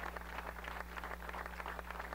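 Audience applauding: dense, irregular clapping of many hands, over a steady low electrical hum.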